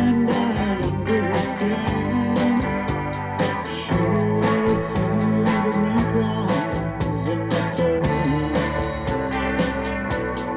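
Live country band playing a song: electric guitar over bass and drums, with a steady beat throughout.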